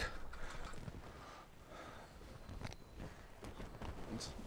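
Faint handling noise: quiet rustling and a few light clicks as a landed smallmouth bass is held and the lure is worked out of its mouth by hand.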